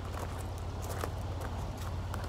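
Footsteps crunching on gravel, a few soft steps, over a steady low rumble.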